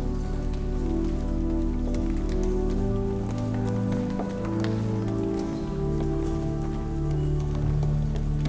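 Church organ playing slow, sustained chords that change every second or so, over a light patter of footsteps and shuffling.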